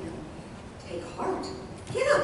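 A woman's voice reading aloud in short phrases separated by brief pauses.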